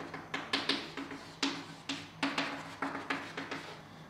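Chalk on a blackboard drawing dashed lines in short strokes: a run of quick, irregular taps, about three or four a second.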